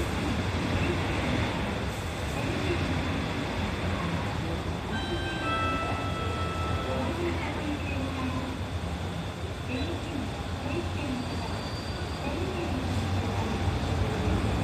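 Diesel engine of a city route bus idling at a stop, a steady low hum. A short electronic tone sounds from about five to seven seconds in, and a voice is heard faintly.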